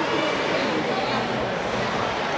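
Many voices talking over one another in an ice rink: crowd and player chatter during a stoppage in play.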